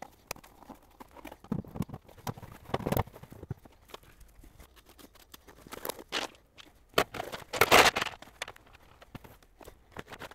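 Irregular clicks, knocks and clatter of hard plastic shell pieces being handled and fitted together, with bursts of rustling and crinkling from cardboard and paper. The loudest rustle comes near the end.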